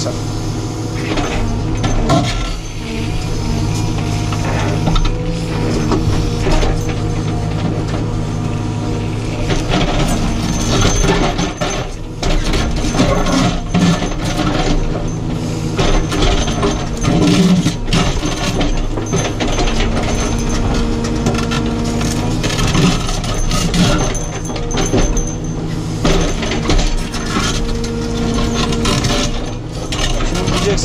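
Caterpillar 432F2 backhoe loader's diesel engine and hydraulics working under load, heard from inside the cab, with repeated knocks and scrapes as the backhoe bucket digs into stony ground around a buried stone.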